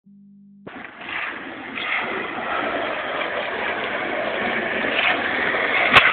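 Skateboard wheels rolling over rough asphalt, a steady rumble that grows louder as the board comes closer, ending in a sharp snap just before the end as the tail is popped for the flip.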